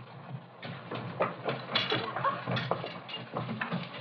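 A scuffle of feet and bodies: irregular knocks, shuffling and clatter, with a few brief indistinct voice sounds about halfway through.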